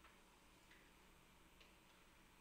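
Near silence: room tone with a low steady hum and a few faint, irregular ticks.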